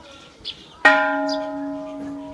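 A large hanging temple bell struck once, about a second in, then ringing on with a low tone and several higher overtones that slowly fade.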